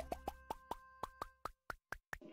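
Cartoon sound effect: a rapid series of short pops, each rising quickly in pitch, about eight a second. Each pop marks one number appearing on a finger joint as the count runs up.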